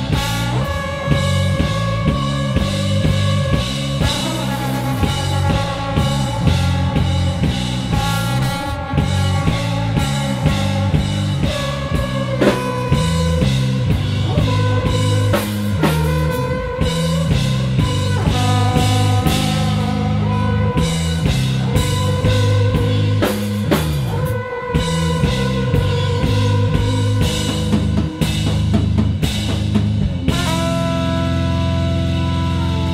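Live instrumental trio: a trombone, played through effects pedals, holds long notes over an electric bass line and a drum kit.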